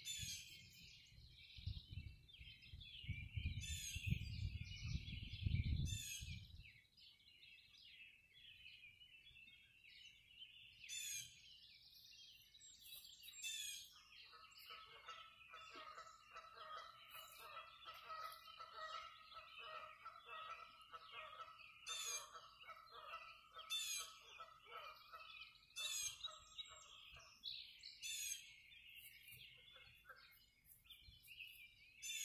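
Dawn chorus of many songbirds chirping and singing together, over a low rumble for the first six seconds or so. From about halfway, a lower, rapidly pulsed call on a steady pitch runs for about twelve seconds.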